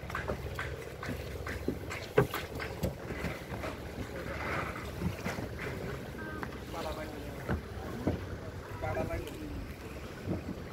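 Background chatter of people talking off-mic over a low, steady rumble, with a few sharp knocks.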